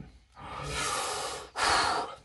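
A man breathing heavily near the microphone: a long breath of about a second, then a shorter, louder breath near the end.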